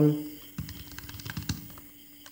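Computer keyboard typing: a handful of scattered, separate key presses as a short line of code is typed and partly deleted.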